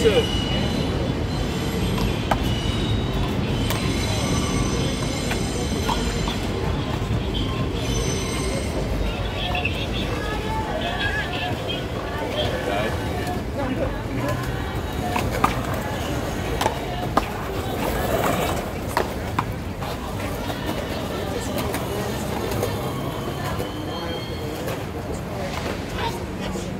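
Steady low rumble of a passing train, with thin high wheel squeal in the first several seconds. Two sharp smacks stand out about fifteen and seventeen seconds in.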